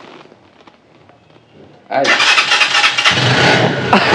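A new motorcycle's engine started about halfway through, then running with a steady low note from about three seconds in, with loud voices over it.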